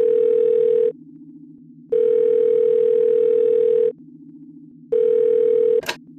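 Telephone ringback tone of an outgoing call waiting to be answered: a steady mid-pitched tone sounds for about two seconds, pauses for about a second, and repeats. Near the end it cuts off and the line picks up with a click.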